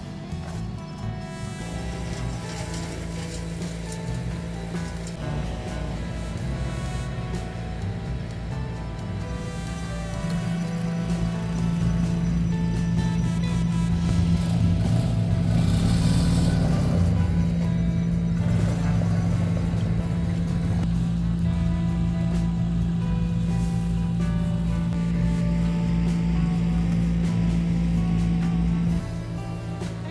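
Background music over the steady drone of a rented wood chipper's engine. The drone gets louder about ten seconds in and drops suddenly near the end.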